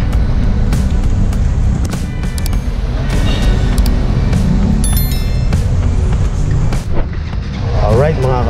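Busy city street traffic with a heavy, steady low rumble on the camera microphone, under background music. Brief high chimes sound about five seconds in, as a subscribe-button animation plays.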